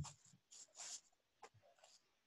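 Near silence: room tone with a couple of faint clicks and a soft brief hiss.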